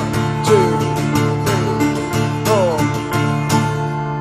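Acoustic guitar strumming chords in a rhythmic pattern, with string slides heard as falling pitch glides, over a steady held keyboard tone. The strumming stops near the end.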